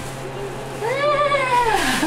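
A one-year-old baby's single drawn-out vocal sound, about a second long, rising then falling in pitch.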